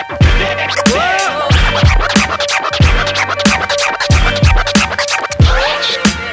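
Instrumental boom bap hip hop beat with vinyl turntable scratching over it. A steady kick drum and bass run underneath, with scratched record sounds sliding up and down in pitch, and no rapping.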